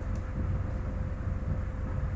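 Steady low background rumble with a faint steady hum and a single faint click just after the start.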